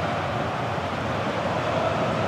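Steady football-stadium ambience from the match broadcast: an even, constant crowd-like din with no distinct kicks, whistles or shouts standing out.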